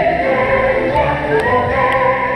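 Background music: a choir singing in several parts on held notes.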